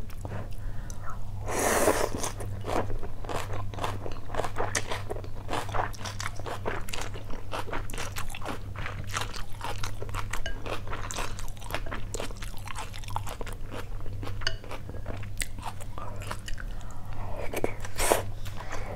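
Close-miked mouth sounds of eating noodle soup: a slurp of rice noodles about two seconds in, then steady chewing with many small wet clicks and crunches, over a steady low hum.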